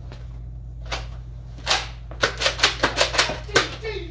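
Toy foam-dart blaster firing: a single sharp shot about a second in, another shortly after, then a rapid volley of about nine shots at around six or seven a second.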